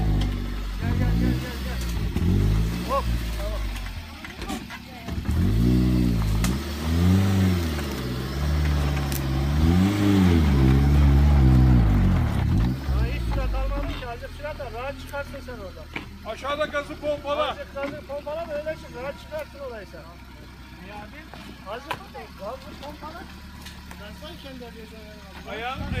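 Suzuki Jimny's engine revving up and down in repeated surges as it climbs a steep, loose dirt slope, then dropping to a low, steady idle about halfway through.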